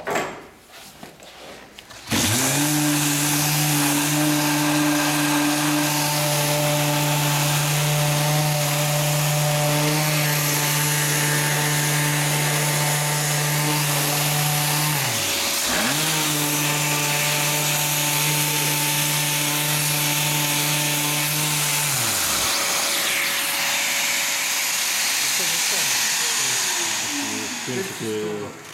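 Mirka electric random orbital sander switched on about two seconds in, running steadily while sanding a hardwood board. Its motor hum drops and comes back up once about halfway, and it winds down a few seconds before the end.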